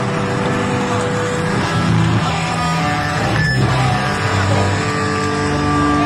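Live punk band playing without vocals: distorted electric guitar over a stepping bass line, with one brief crash-like burst about three and a half seconds in.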